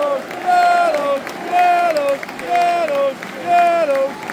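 Football crowd chanting in unison: a held note falling to a lower one, repeated about once a second, with hand-clapping between the calls.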